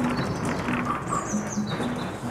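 Washing machines on wheeled bases being pushed across a stage: a steady rolling rumble with short squeaks and chirps.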